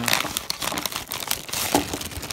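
A clear plastic bag crinkling in the hands, with its paper wrapping rustling, in a dense run of irregular crackles.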